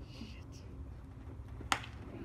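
Outdoor ballfield background: a steady low rumble with faint distant voices, and one sharp click about a second and a half in.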